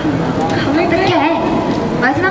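Several voices talking and calling out at once over a crowd's background noise, with no clear words.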